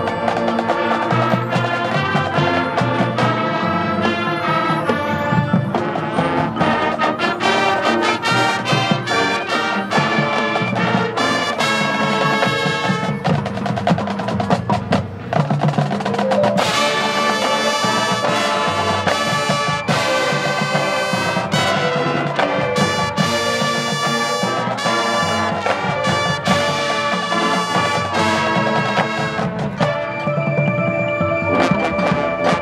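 High school marching band playing: brass over drums and front-ensemble mallet percussion. About halfway through the music drops back for a moment, then the full band comes back in louder and brighter.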